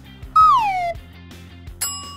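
Cartoon-style sound effects over light background music: a whistle-like tone sliding down in pitch for about half a second, then near the end a bright chime that rings on.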